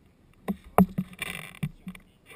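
A run of close knocks and bumps with a short rustle in the middle, the loudest knock just under a second in: a child clambering onto a seated man's lap right beside the camera, clothes brushing and bodies bumping close to it.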